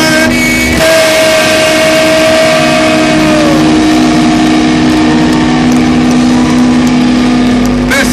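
Live rock band playing loud through a festival PA: the singer holds one long note that falls away about three and a half seconds in, over sustained electric guitar chords.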